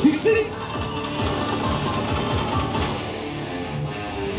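Yosakoi dance music played loud over speakers, with two loud shouted calls right at the start.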